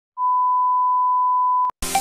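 Steady 1 kHz sine test tone of a colour-bars-and-tone test card, held for about a second and a half and ending in a click. Electronic dance music starts just before the end.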